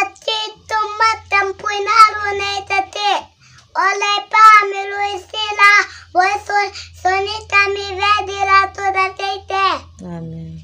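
A young boy praying aloud over someone in a high, sing-song chant, his voice holding level notes in three long phrases with short breaks for breath.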